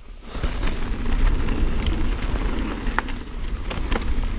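Mountain bike rolling quickly down a dry dirt singletrack: tyres rumbling on the dirt, with wind buffeting the helmet-mounted camera microphone. It builds within the first second and then stays loud and steady, with a few small clicks.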